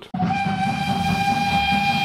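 Train whistle: one long steady blast lasting about two seconds that cuts off suddenly.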